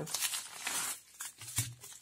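Thin plastic postal mailer bag crinkling and crackling as it is handled and torn open by hand, busiest in the first second.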